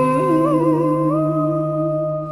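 A chèo singer holds a long, wavering note without words, stepping up in pitch twice and holding it, over a steady accompanying drone.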